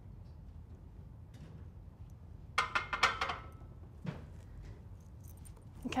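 Loaded barbell racked onto the steel uprights of a bench-press bench: a brief cluster of metallic clinks and rattles with a short ring, about two and a half seconds in, then a softer knock about a second later.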